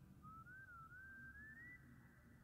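Faint, soft whistling under the breath: one thin tone that wavers and rises in pitch over about a second and a half.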